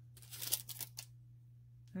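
Thin clear plastic sleeve crinkling in a few quick rustles during the first second as a nail dust brush is slid out of it.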